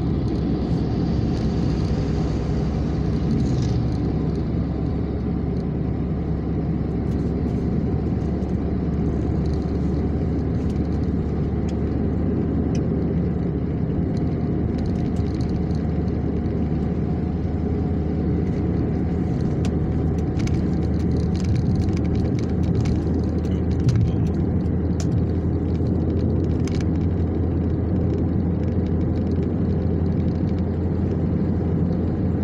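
Steady road and engine noise heard inside a car's cabin while it cruises along a highway.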